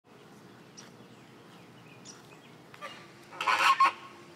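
Flamingos calling with goose-like honks: a few faint calls, then a louder cluster of honks near the end.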